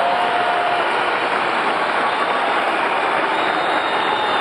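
Large crowd cheering and shouting in a steady, dense wall of noise, with a few long held high tones rising above it.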